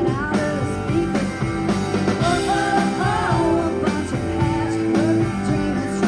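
A live country band playing on stage, with acoustic and electric guitars and a melody line that bends and slides in pitch over a steady held note.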